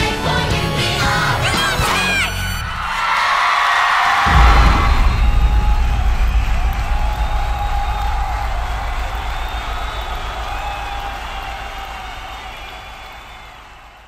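A musical-theatre show tune ends about two seconds in. A crowd then cheers and whoops over a deep low rumble, and the sound fades out gradually toward the end.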